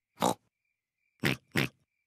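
Cartoon pig snorts made by a voice actor: three short snorts, one just after the start and two in quick succession about a second later.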